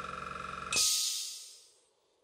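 Small airbrush compressor running with a steady rapid pulsing, then cutting out about three-quarters of a second in with a sharp hiss of air that fades over about a second. It is its automatic pressure switch stopping it as the pressure pot reaches around 60 psi.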